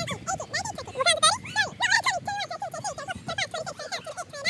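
Children's high-pitched voices counting aloud, fast and continuous.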